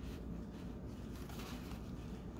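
Faint rustling of a pipe cleaner and a tissue-paper skirt being handled and bent by hand, with a short rustle a little past halfway, over a low steady room hum.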